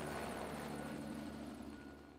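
Helicopter flying overhead, a steady rotor and engine hum that fades out gradually.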